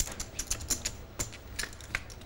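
Poker chips clicking together in quick, irregular taps.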